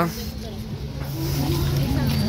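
A steady low engine hum that grows a little stronger about a second in, with faint voices in the background.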